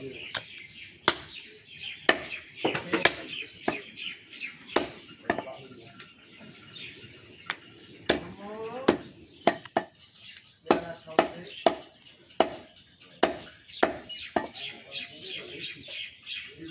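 Meat cleaver chopping beef on a wooden stump block: repeated sharp, irregular chops, about one to three a second. Birds chirp in the background.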